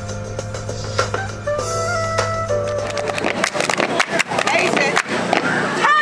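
Recorded music with held notes gives way about halfway through to live outdoor sound: a crowd and a dense run of sharp claps and stomps on a hard court.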